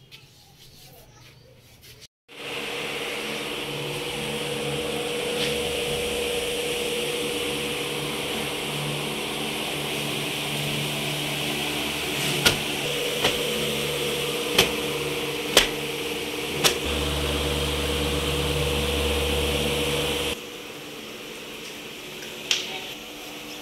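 An electric motor running with a steady hum, starting suddenly about two seconds in and cutting off shortly before the end, with five sharp clicks in the middle.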